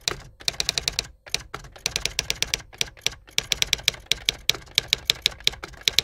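Manual typewriter keys clacking in quick runs of sharp strikes, with short pauses between the runs, as a line of text is typed.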